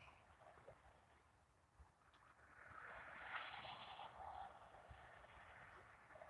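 Near silence, broken by a faint rushing of distant traffic, a semi truck passing on the road below, swelling and fading over about two seconds in the middle.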